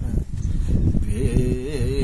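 A man's voice drawn out on long wavering notes, sung or crooned, coming in about halfway through, over a steady low rumble.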